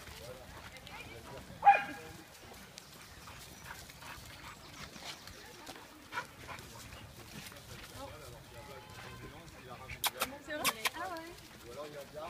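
Dogs playing together, one of them giving a single short, loud bark about two seconds in. Near the end come more brief dog sounds mixed with sharp clicks.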